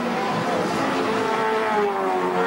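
Group A racing touring car engines at racing speed as cars pass close by, their engine note falling in pitch during the second second.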